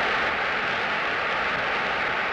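A steady rushing noise with a faint high-pitched hum running through it.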